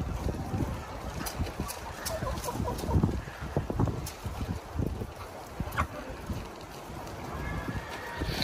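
Chickens clucking quietly, over low rustling and a few sharp clicks.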